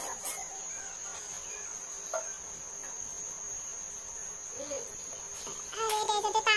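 Crickets chirping in one continuous high-pitched trill, with a few faint clicks.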